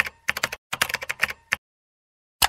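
Computer keyboard typing: rapid key clicks in two quick runs, stopping about one and a half seconds in.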